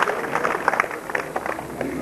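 Scattered hand-clapping from a crowd, dense at first and thinning out toward the end.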